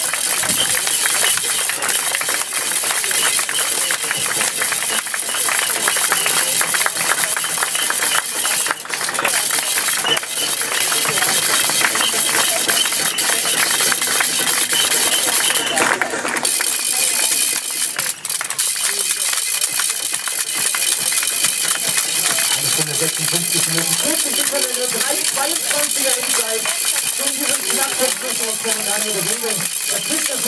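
A small group of spectators clapping steadily and continuously, with voices in the background near the end.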